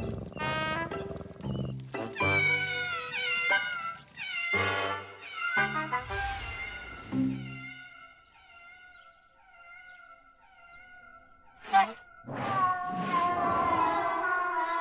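Wordless cartoon cat-character vocal noises, meow-like, over background music for the first half. Then quieter music with sparse notes, a sudden sharp hit about twelve seconds in, and louder music after it.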